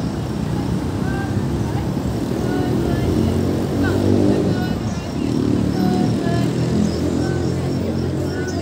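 City street ambience: motor traffic passing, swelling twice in the middle as vehicles go by, with the voices of passers-by.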